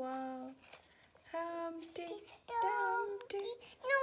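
A toddler singing wordless held notes, a few sung tones separated by short pauses. A wavering note comes about three seconds in, and a quick high falling squeal comes near the end.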